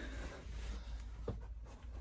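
Faint rustle of clothing and handling noise as a hand-held camera is carried, over a low steady hum, with one short click a little past the middle.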